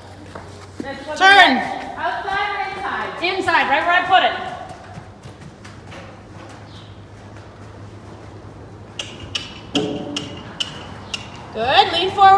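A woman's raised voice calling out with drawn-out, rising and falling tones for the first few seconds, then a quieter stretch with a low steady hum. Near the end comes a quick run of light clicks from a horse's hooves as it trots on the arena footing.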